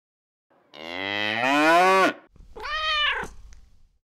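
Long-haired tabby cat meowing twice: a long call that climbs in pitch, then a shorter one that rises and falls.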